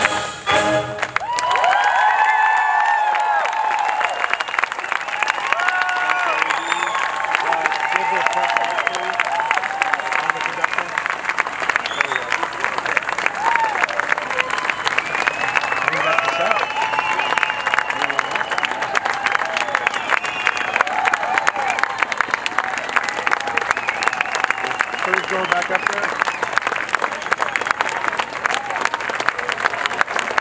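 A wind band's final chord cuts off about a second in, and the audience breaks into a standing ovation: dense, sustained applause with cheering voices calling out over it.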